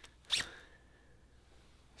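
A jacket zipper pulled once, quickly, about a third of a second in, followed by a faint high tone fading away over about a second; otherwise quiet.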